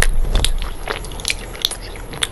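Close-miked crunchy chewing of a brittle, chalk-like food, with a series of sharp, irregular crunches a few times a second and a low rumble at the very start.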